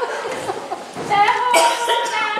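A woman coughing, then a woman's voice coming in about a second in and holding one raised note.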